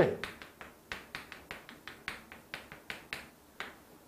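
Chalk writing on a chalkboard: an irregular series of sharp taps and short scrapes, several a second, as each stroke of a few characters is made.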